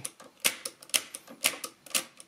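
Keys of a Mercedes-Euklid Model 29 mechanical calculator being pressed in turn, a quick string of sharp clicks, about four or five a second. The 2 and 3 keys are pressed to shift a small gear along its axle into mesh with rack 2 or rack 3.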